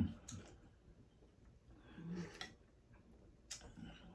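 Soft clicks of spoons against soup bowls as two people eat soup, a few scattered clicks, with a hummed 'mm-hmm' of approval.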